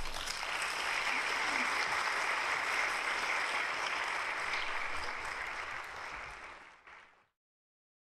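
Congregation applauding, a dense, steady clapping that fades out near the end.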